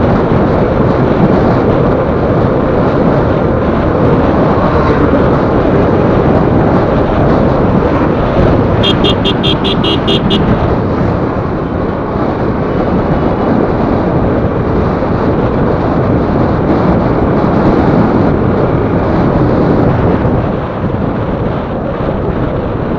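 Wind buffeting the microphone of a moving motorcycle, over its engine and road noise, loud and steady. About nine seconds in, a rapid run of high beeps lasts about a second and a half.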